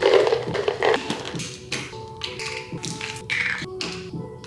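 Supplement capsules rattling out of a plastic bottle, then dropped into a plastic weekly pill organizer with a series of light taps and clicks. Background music plays throughout.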